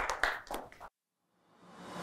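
A small group of people clapping, cut off abruptly just under a second in. After a brief silence, a whoosh swells up near the end as the show's logo transition comes in.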